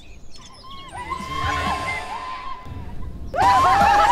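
Faint bird chirps, then a long, held, slightly wavering high tone. A little past three seconds in, several women suddenly break into loud laughter.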